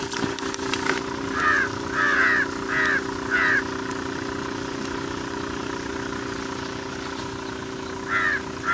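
A crow cawing four times, the caws a little over half a second apart, over a steady low drone from an idling engine. A few clicks and small splashes come in the first second as a hand works in a bucket of water.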